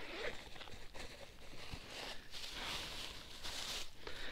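Faint rustling and handling noises as the luggage on a parked small motorcycle is rummaged through, with small ticks and scrapes; no engine is running.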